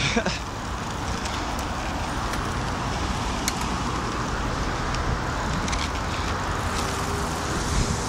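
Steady rushing of wind on a phone's microphone carried on a moving bicycle, with road and tyre noise beneath and a light click about three and a half seconds in.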